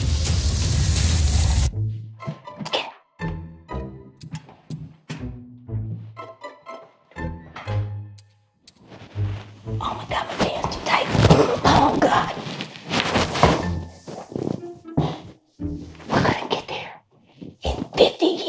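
A loud sustained sound cuts off suddenly, followed by a run of dull thunks and then a stretch of scuffling as bodies move on a hardwood floor.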